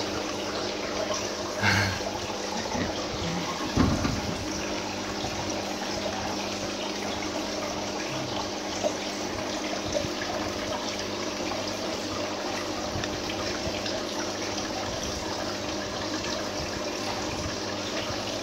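Aquarium filter running: a steady trickle of water with a faint low hum. A short knock comes about two seconds in and a dull bump about four seconds in.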